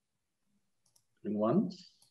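A man's voice saying one short word, about a second and a half in, over a near-silent video-call line.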